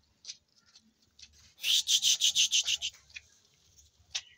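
A calf suckling at a goat's udder, its head rubbing against the goat's belly. Scattered soft sucking smacks are broken midway by a loud run of quick rubbing, rustling strokes, about eight a second, for just over a second.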